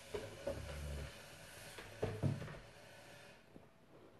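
Handling noise of a phone being repositioned on its makeshift stand: a few light knocks and rubbing, the loudest pair about two seconds in.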